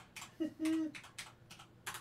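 Typing on a computer keyboard: a quick, irregular run of separate key clicks, with a short hummed vocal sound about half a second in.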